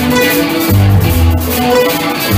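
Live rock band playing loud: guitars work a repeating riff over low bass notes and drums.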